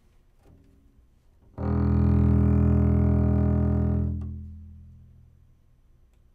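One long bowed note on a double bass. It starts sharply about one and a half seconds in, holds steady for about two and a half seconds, then dies away.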